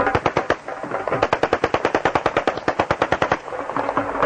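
Automatic rifle fired into the air in rapid bursts: a short burst at the start, then a longer one of about two seconds.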